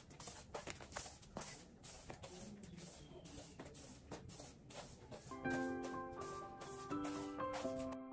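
Soft-bristle broom swept across a tiled floor in repeated quick strokes, two to three a second. About five seconds in, soft piano music comes in under it.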